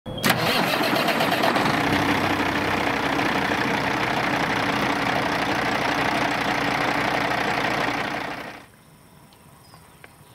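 A truck engine running steadily and loudly; it comes in abruptly at the start and fades out about eight and a half seconds in.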